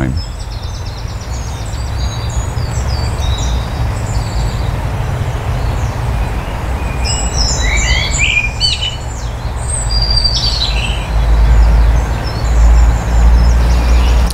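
Small birds chirping and singing in short, high calls, busiest about halfway through, over a steady low rumble that swells louder in the last few seconds.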